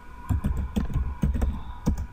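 Typing on a computer keyboard: a quick run of about ten keystrokes, entering a web address.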